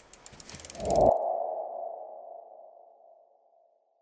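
Animated logo sound effect: a run of quick ticks, then a swell into a low thump about a second in. It leaves a single ringing tone that fades away over the next two seconds.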